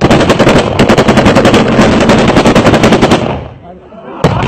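Automatic rifle fired into the air in one long burst, rapid cracks at about ten a second, stopping about three seconds in.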